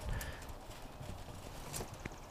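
Knife cutting into a raw potato on a foil-covered table, faint, with a few light taps and scrapes.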